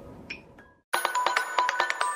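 LG KS360 mobile phone ringtones: the last notes of one ringtone fade out, a brief silence follows, and about a second in the next ringtone starts, a fast electronic melody of short, bright notes.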